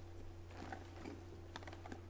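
Faint quick clicks of typing on a computer keyboard, starting about half a second in, over a steady low electrical hum.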